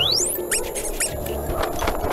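Cartoon sound effects over background music: a fast rising whistle tops out just after the start, followed by a quick run of short, high sparkly clicks as the character sails through the sky trailing stars.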